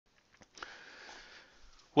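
A man draws a breath in through the nose close to the microphone, about a second long, after a couple of faint clicks. He starts to speak at the very end.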